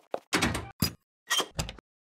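Sound effect of a toy oven door being opened and shut: a longer scrape about a third of a second in, a few knocks, and two heavier bangs near the end.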